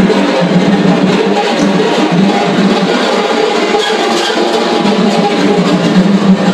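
Improvised percussion on snare drums: an unbroken, dense flurry of rapid strikes and scrapes on the drum heads, over a steady low hum.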